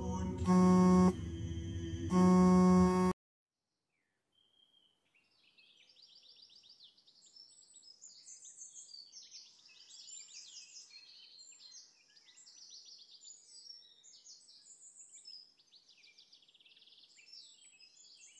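A loud held electronic chord that swells twice and cuts off abruptly about three seconds in. After a short silence, faint birdsong follows: quick repeated high chirps and trills that run on to the end.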